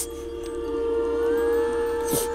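Background score of sustained held notes that swell slightly, with a higher note gliding up about halfway through.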